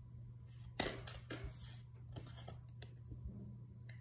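Tarot cards being shuffled and handled: soft, scattered flicks and taps of card stock, over a faint steady low hum.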